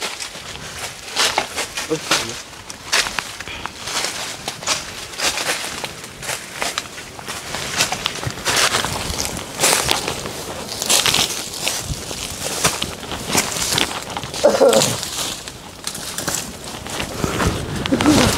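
Footsteps crunching and rustling through dry fallen leaves and twigs, with irregular snapping and crackling as people scramble over branches and rock.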